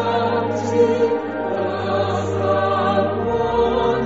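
Buddhist devotional music: voices singing with vibrato over a steady low sustained accompaniment.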